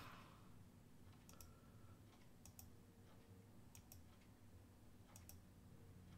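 Faint computer mouse clicks, mostly in quick pairs about once a second, over near-silent room tone.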